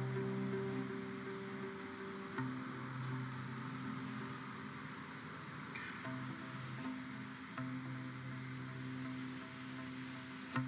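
Viola played through electronic effects: held low notes with a droning, ambient texture and a steady hiss, breaking off and returning a few times. The effects are shaped by the dancer's movements through a MYO gesture-control armband.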